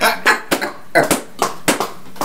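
Handling noise from a bottle and cup being picked up and set down: a few sharp knocks and clicks with short breathy bursts of laughter between them.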